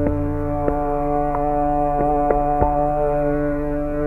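Hindustani classical music in raag Yaman Kalyan: a long, steady held note over the tanpura drone, with tabla strokes falling about every two-thirds of a second in a slow tempo.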